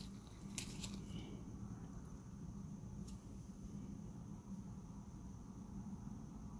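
Quiet room tone with a low steady hum, and a few faint handling clicks from gloved hands with a ring and a jeweler's loupe, mostly in the first second and once about three seconds in.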